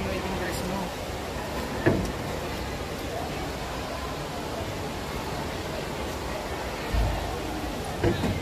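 Steady rushing noise of falling water from the conservatory's indoor waterfall, under faint voices of people nearby. A sharp knock comes about two seconds in and a low thump near the end.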